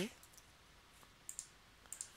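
Near silence with a few short, faint clicks from working the computer: one a little over a second in and another near the end.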